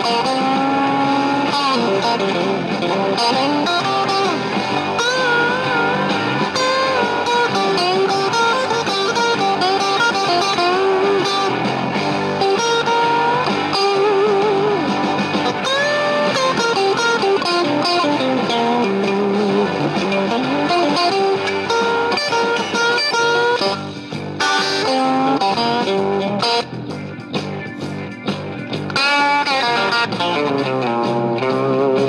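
Fender '57 reissue Stratocaster played through a Fender '65 reissue Deluxe Reverb tube amp, the amp pushed with a power attenuator and no pedals. Single-note lines with string bends, the playing dropping softer briefly near the end.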